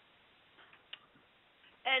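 Quiet room tone in a pause in a woman's lecture, with one short click about halfway through; her speech resumes near the end.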